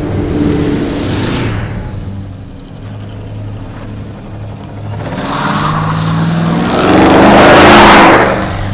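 Motorcycles pass about a second in. Then a Mad Max Pursuit Special replica car revs hard and spins its wheels pulling away, the engine note rising and loudest near the end. A low music bed runs underneath.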